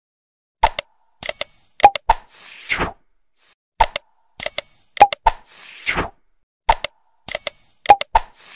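Subscribe-button animation sound effects: mouse clicks, a short bell ring and a whoosh. The same sequence plays three times, about every three seconds.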